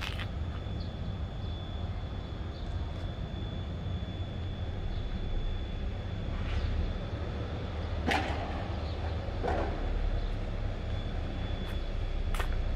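Outdoor street ambience: a steady low rumble with a faint steady high whine, and a few short scuffs in the second half.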